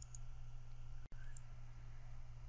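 Faint computer-mouse clicks over a steady low electrical hum. The sound drops out for an instant about halfway through.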